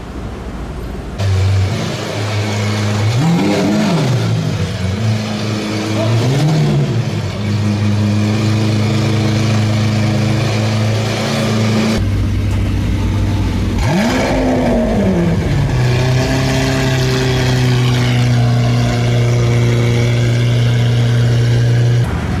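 Sports-car engines idling with the throttle blipped, twice in quick rises and falls over a steady idle. After a cut, a Lamborghini Aventador's V12 blips once and settles to a steady, higher idle.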